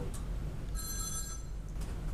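A brief electronic alert tone, several steady pitches sounding together for about two-thirds of a second, starting about three-quarters of a second in, over a steady low hum.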